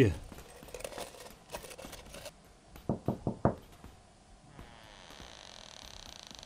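Faint handling noise, then a quick run of about five thumps about three seconds in, each short and sharp. A faint high steady whine follows.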